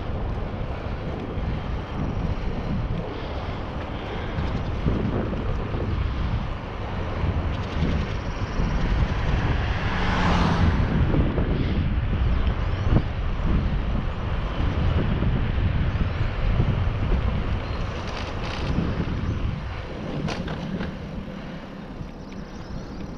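Wind buffeting the microphone of a camera riding on a moving bicycle: a steady low rumble that swells into a brief louder rush about halfway through.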